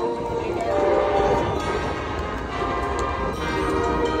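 High school marching band brass holding long, loud sustained chords, with stadium crowd noise underneath.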